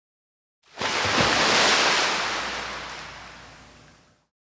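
A rush of water like a breaking wave, starting suddenly just under a second in and fading away slowly over the next three seconds.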